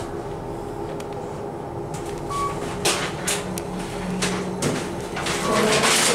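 KONE MonoSpace machine-room-less traction elevator car riding upward, a steady hum in the cabin. There is a short beep a couple of seconds in and a few sharp clicks over the second half.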